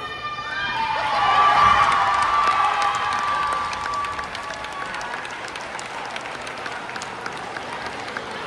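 A crowd cheering and shouting, loudest a second or two in, then dying down into steady applause with many hands clapping.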